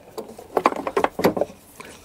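A handful of light clicks and taps of small hardware being handled while a DC-DC converter is fitted to a metal-sheathed panel: the unit settling on its mounting bolts and a screw and screwdriver being picked up.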